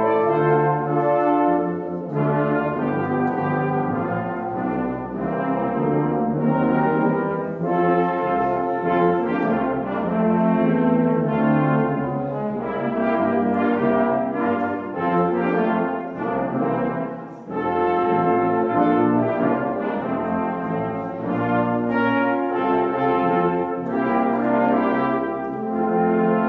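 A small church brass ensemble of trumpets and a lower brass instrument plays a slow hymn-like piece in several parts. There is a short break between phrases about two thirds of the way through.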